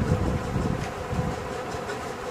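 Low, irregular handling noise as a hard disk drive is worked into its metal mounting bracket, a few faint ticks among it, over a steady buzzing hum.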